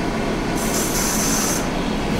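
Electric hand dryer blowing, a steady rush of air, with a higher hiss added for about a second in the middle.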